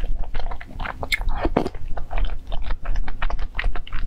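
Close-miked eating sounds: glutinous rice balls (tangyuan) in sweet congee being bitten and chewed, a dense run of irregular wet clicks and smacks of the mouth, with one longer, wetter sound about a second and a half in.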